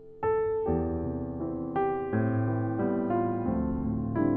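A piano keyboard plays a slow two-handed chord progression in C, moving from an F major seventh toward a D minor seventh. A new chord or a moving inner voice is struck about every half second to a second.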